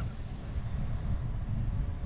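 Wind buffeting the microphone on an open carrier flight deck, a steady low rumble with no clear engine tone.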